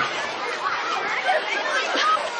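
Many children's voices chattering and calling at once, overlapping into a steady babble with no single voice standing out.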